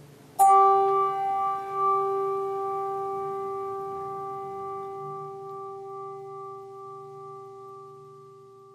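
A bell struck once about half a second in, ringing with a clear low tone and several higher overtones that die away slowly: a memorial toll for the dead named in the reading.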